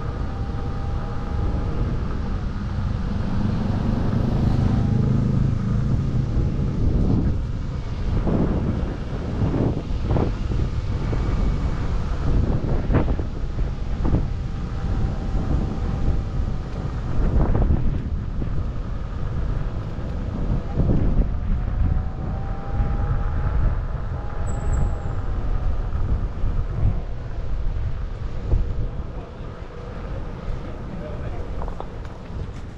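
Wind buffeting the microphone over the rumble of an electric unicycle's tyre rolling on concrete and brick paving, with a faint whine that rises and falls in pitch. Several sharp knocks come through the middle part, as the wheel goes over joints and bumps.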